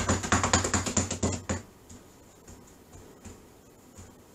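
Paper towel crinkling and rubbing in gloved hands: a rapid run of crackling ticks over a low hum that stops suddenly about one and a half seconds in, followed by a few faint light taps.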